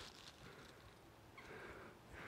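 Near silence: faint lakeside background, with a slightly louder faint patch about one and a half seconds in.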